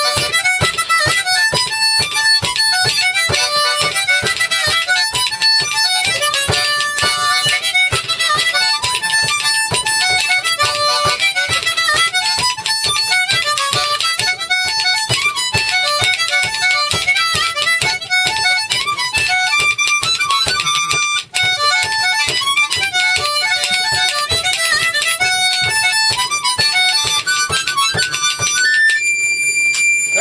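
Harmonica and fiddle playing a lively tune together in many quick notes, ending just before the close on one long held note.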